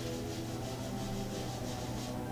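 A cloth rubbing steadily over a glossy comic book cover, with quiet background guitar music.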